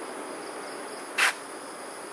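Steady chorus of crickets and other insects, with one brief hissing burst about a second in.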